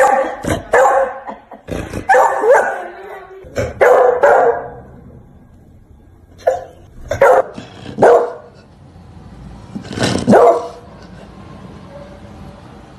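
Beagle barking: loud barks in irregular groups, some drawn out with a rising pitch, with short pauses between the groups.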